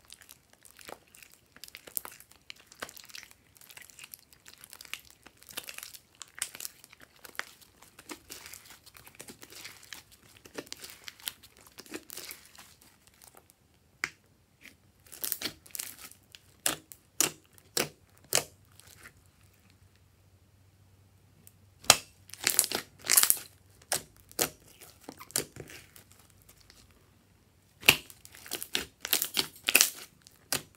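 Hands squeezing, stretching and folding a large mass of sticky purple slime in a glass dish: wet crackles and pops in bursts as the slime tears and air pockets burst. There is a quiet pause about two-thirds of the way in.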